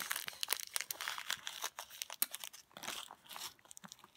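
A small plastic zip-lock bag crinkling as it is handled and opened, a quick run of crackles that thins out toward the end.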